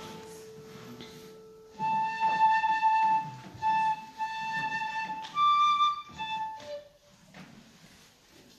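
Solo flute playing a long held low note, then a phrase of shorter, higher detached notes that stops about seven seconds in.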